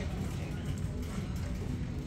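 Steady low hum of a shop's background noise, with faint music and voices.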